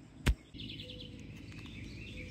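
A sharp click about a quarter-second in, then outdoor ambience: birds chirping in short repeated calls over a low, steady background rumble.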